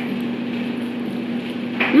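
A steady low hum with a faint hiss. Near the end a woman with her mouth full gives a rising, closed-mouth "mmh" of approval.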